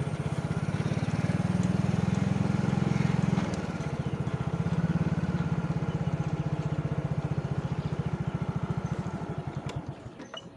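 A small engine running steadily with a rapid, even pulse, dipping briefly about a third of the way in and fading near the end.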